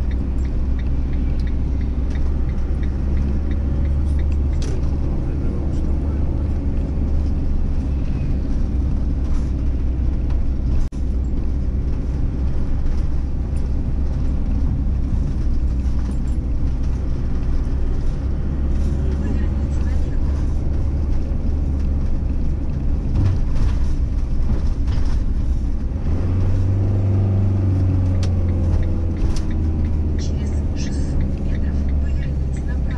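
Motorhome driving through city streets: a steady low engine and road rumble, with a firmer engine note coming in near the end.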